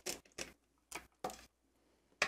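Four sharp clicks, roughly one every half second, from handling a stamp positioning platform: its clear plastic lid and small round magnets being set down on the metal base.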